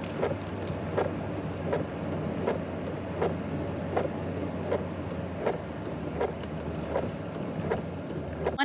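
Inside a car driving in the rain: a steady low engine and road hum with the hiss of rain, and a regular tick about every three-quarters of a second.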